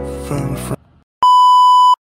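A background song with a steady beat cuts off under a second in. After a brief silence, a loud steady electronic test-tone beep sounds on one pitch for a bit less than a second, as part of a TV-glitch end-screen effect.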